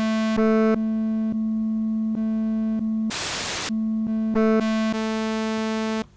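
Roland JD-Xi synthesizer sustaining one note while its oscillator 1 waveform is switched from shape to shape, so the tone changes every half second or so, from sawtooth to square and others. A little past the middle the note turns into a half-second hiss on the noise waveform. The note cuts off at the end.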